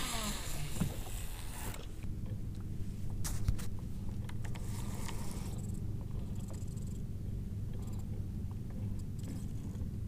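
Baitcasting reel on a cast: the spool spins and line pays out with a hiss for about the first two seconds. A steady low hum follows, with a few light clicks as the bait is worked.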